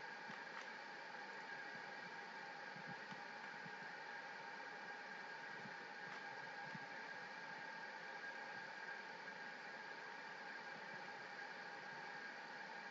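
Faint steady hiss of room tone and microphone noise, with a few faint steady tones underneath and a few very faint ticks.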